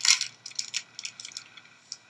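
Rubik's cube and cardboard box being handled: a string of light, irregular plastic clicks and rattles, loudest at the very start and thinning out.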